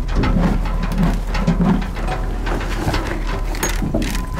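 Horse eating feed from a bucket inside an aluminum stock trailer: a run of small, irregular clicks, knocks and rattles.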